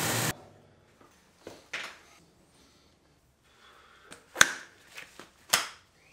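Water rushing into a plastic backpack sprayer tank from a tap cuts off abruptly just after the start. A few light knocks follow, then two sharp clacks about four and five and a half seconds in, as plastic chemical bottles are set down beside the sprayer.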